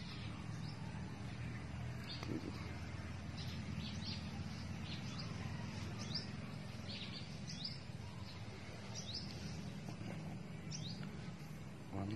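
Small birds chirping in the background: short, high, quick chirps repeating irregularly, over a steady low background hum.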